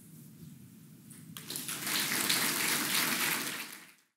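Audience applause, starting about a second and a half in after the talk's closing line and fading out near the end.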